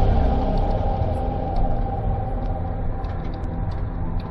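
Car driving at highway speed, heard from inside the cabin: a steady low rumble of engine and road noise.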